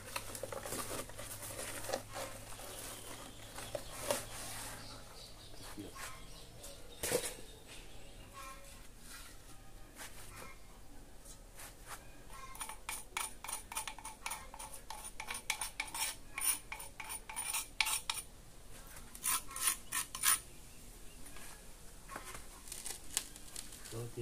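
Paper lining crinkling as it is pulled out of a hardened sand-and-cement vase casting. About halfway in, a small metal tool scrapes and taps rapidly against the set cement with a faint ringing, in two bursts with a short pause between.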